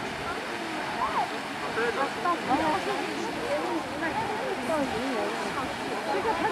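Grand Geyser erupting: a steady rushing hiss of water jetting and splashing down, with the overlapping chatter of many onlookers over it.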